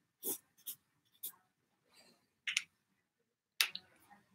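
A few soft, irregular ticks and taps from a marker pen working on flip chart paper as zigzag lines are drawn.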